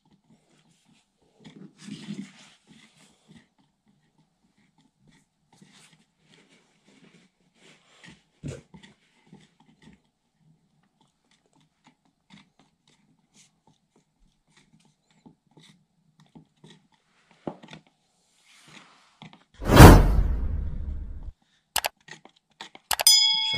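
Faint scraping and light knocks of a wooden stir stick in a small plastic tub as two-part epoxy resin is mixed slowly. Near the end a loud rushing burst sound effect fades out over about two seconds.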